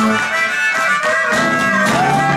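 Blues harmonica played through a handheld microphone, holding long notes that bend in pitch, over strummed and picked guitars in a live blues band.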